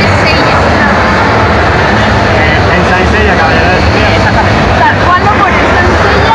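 Several people's voices talking at once, over a steady low rumble.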